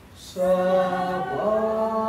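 Unaccompanied singing of a slow communion hymn, with long held notes. After a brief breath pause, a new phrase begins about a third of a second in, and the melody steps up in pitch about halfway through.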